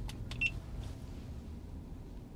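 Low, steady rumble inside a slow-moving electric car's cabin, with a couple of light clicks and one short high beep about half a second in.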